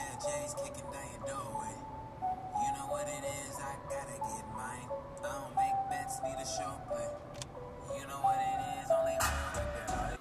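Music with a singing voice over a stepping melody.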